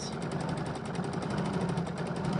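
Small domestic sewing machine running steadily at speed during free-motion stitching, its needle going in a rapid, even rhythm.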